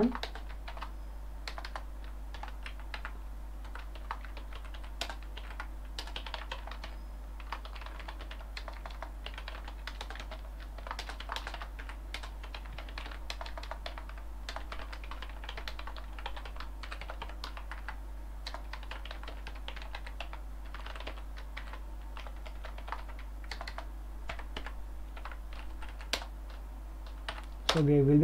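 Typing on a computer keyboard: irregular runs of key clicks with short pauses, over a steady low electrical hum.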